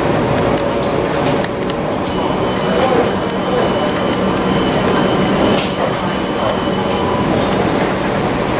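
Passenger train standing at the platform, running steadily. Two short high electronic beeps come near the start and again about two and a half seconds in, then a thin steady tone sounds for about five seconds while the doors are open for boarding.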